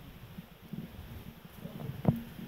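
Faint, irregular low rumble of wind buffeting the microphone.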